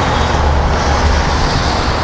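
Steady, loud rumble of city street traffic, deepest in the low end.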